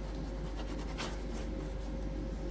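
Paintbrush scrubbing and dabbing thick paint over a cracked, textured paste surface: a few short scratchy strokes through the middle, the strongest about a second in, over a steady low hum.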